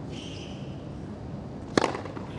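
A tennis racket strikes the ball on a serve: one sharp crack near the end, over a steady murmur of court ambience.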